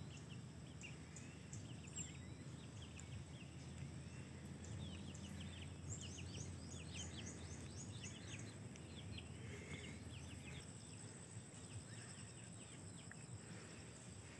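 Faint chirping of small birds, many short quick calls clustering around the middle, over a steady low outdoor rumble.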